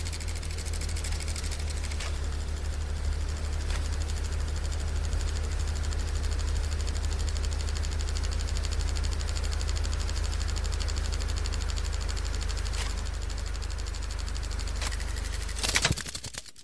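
Steady electronic static drone with a deep hum and a hiss, broken by a few faint clicks. It swells to a short loud crackle near the end and then fades out.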